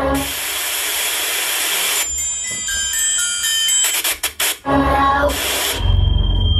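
Electronic music: a loud wash of white-noise hiss, then clusters of high held synth tones, a quick stuttering chopped passage about four seconds in, and a second noise swell before steady tones and bass come in.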